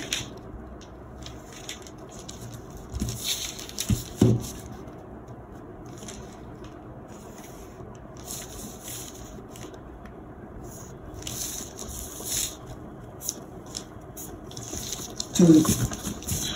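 Felt-tip marker drawing lines on pattern paper along a metal ruler: several short scratchy strokes, with two knocks about four seconds in.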